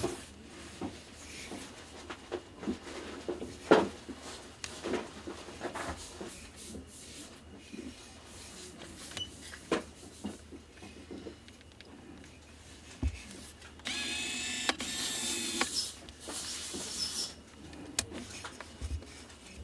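Handling noise from gloved hands on a Sigma 15mm fisheye lens mounted on a Canon DSLR: scattered small clicks and knocks. Near the end comes a steady scraping rub lasting about two seconds as the lens's focus ring is turned.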